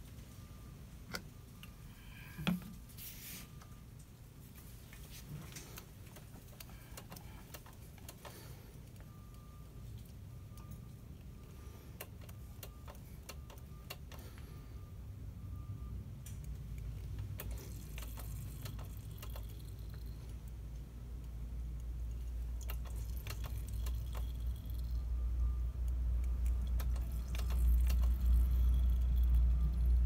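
Scattered light clicks and knocks of hand work on a motorcycle's rear brake bleeder and line, with one louder knock a couple of seconds in, over a low rumble that grows louder through the second half.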